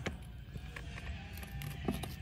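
A few faint clicks and knocks as a DeWalt DCF891 cordless impact wrench's socket is seated on a wheel's lug nut, over a low steady hum; the wrench itself is not running.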